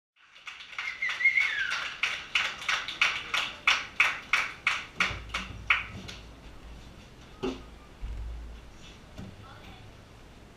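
Audience clapping in a steady rhythm, about three claps a second, with a brief whistle early on; the clapping dies away about six seconds in. A low amplifier hum and a single knock follow.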